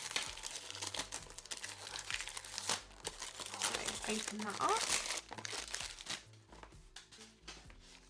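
Cellophane wrapping peeled and crinkled off a cardboard hand-cream box by gloved hands: a dense crackle that dies away about six seconds in.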